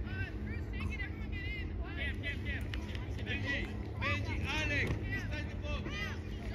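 Distant voices of children and spectators on a soccer field: short overlapping calls and shouts with no clear words, over a steady low rumble.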